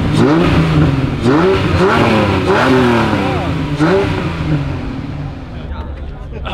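A 1987 Ferrari Testarossa's flat-12 engine being revved in a series of throttle blips, its pitch rising and falling about five times, then dropping away and fading after about four seconds.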